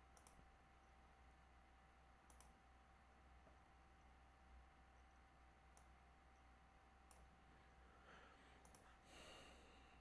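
Near silence with a faint steady hum and a few faint, scattered clicks of a computer mouse, and a soft breath near the end.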